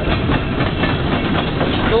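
Coal train hopper cars rolling past: a steady rumble and clatter of steel wheels on the rails.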